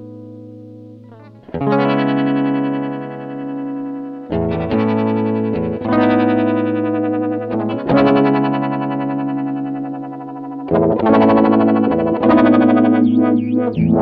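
Electric guitar, a Stratocaster on its bridge pickup, played through an Electro-Harmonix Stereo Electric Mistress flanger/chorus pedal: chords strummed about every two seconds and left to ring, with a slow sweeping flange on them.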